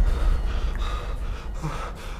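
A person gasping and breathing in short, shaky breaths in shock, over a low rumble that slowly fades.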